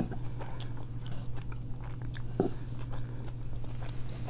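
A person chewing a mouthful of fast food close to the microphone: irregular wet smacks and mouth clicks, one stronger about halfway through, over a steady low hum.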